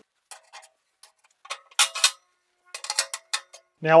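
Metal cooking grates being set back into an offset smoker's steel cooking chamber: scattered metallic clinks and knocks, the loudest about two seconds in, followed by a quick run of lighter clinks.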